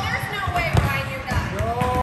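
Basketball bouncing on a gym floor, a few dull thumps roughly a second apart, with voices over it.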